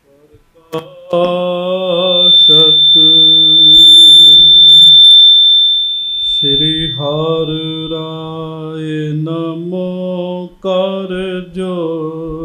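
A man chanting a devotional verse in long, held melodic notes into a microphone. A steady high-pitched whistle, typical of PA feedback, rings over the voice from about a second in until about seven seconds in, and it is loudest around the middle.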